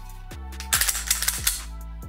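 A quick series of sharp metallic clicks, starting under a second in, as an unloaded GX4 XL pistol is handled with its magazine out, over steady background music.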